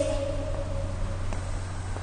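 A child's voice holding one drawn-out word that fades out about a second in, over a steady low hum of room tone.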